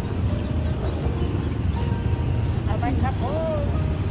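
Outdoor street-market background: a steady low rumble, with a voice rising and falling briefly about three seconds in.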